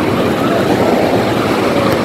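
Shallow sea surf washing in and out at the water's edge, a loud steady rushing noise, with faint voices in the background.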